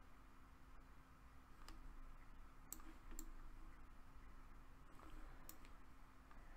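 Near silence with a few faint, sharp clicks of a computer mouse, spaced irregularly, as an on-screen map is dragged around.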